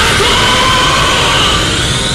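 Pachinko machine's anime battle soundtrack: loud music under a drawn-out shouted attack cry, with a high effect tone that holds and then sweeps upward near the end.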